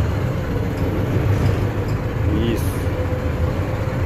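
A bus's diesel engine running steadily as the bus drives slowly straight ahead, heard from inside the cab as a low, even rumble with a steady hum.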